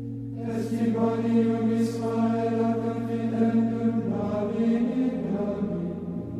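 Liturgical chant: a singing voice carries a slow melodic line over a steady low drone, and the drone shifts pitch about four seconds in.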